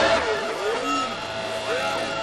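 Breakcore/IDM electronic music with the drums and bass dropped out, leaving a held synth tone with swooping pitch glides over it.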